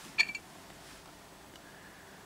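Rough opal pieces clinking together: two or three quick, sharp taps with a brief high ring about a quarter of a second in, followed by faint room tone.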